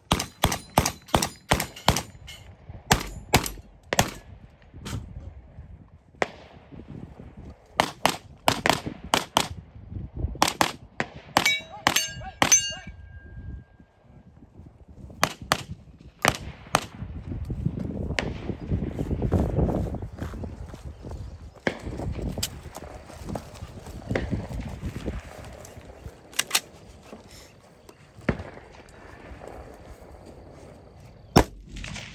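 Gunfire on a three-gun match stage: quick strings of shots over the first dozen seconds, with a brief ringing tone near the end of the run. A few more shots follow, then only scattered single shots through the rest.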